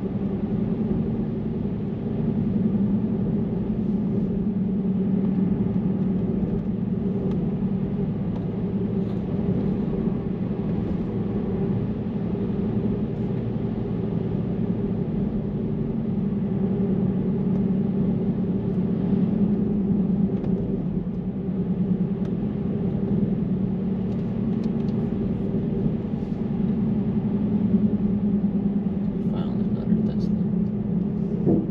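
Steady road and tyre noise inside a moving car's cabin, with a constant low hum.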